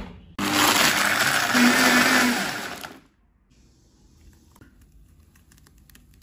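High-speed blender running, grinding a milk and ice mix down to a slush. It starts about half a second in and winds down to a stop at about three seconds, leaving only faint light taps after.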